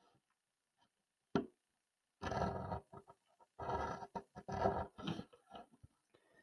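Pencil lead scratching along the edge of a ruler on paper, in three drawn strokes in the second half, with a single sharp click about a second and a half in.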